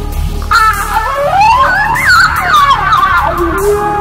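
Electronic instrumental music: a wailing, effects-laden lead line glides up in pitch over about a second and a half and wavers back down, over a steady low bass.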